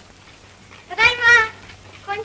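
A girl's high voice calling out once about a second in, a drawn-out, wavering call, over the faint steady hum and hiss of an old film soundtrack.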